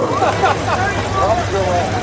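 Track announcer's voice with a steady low rumble underneath from the Bomber stock cars' engines idling on the grid.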